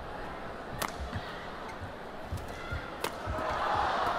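Badminton rackets striking the shuttlecock during a rally: two sharp hits about two seconds apart, over steady arena crowd noise that swells near the end.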